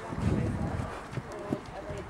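Hoofbeats of a grey pony cantering on a sand arena, with voices in the background.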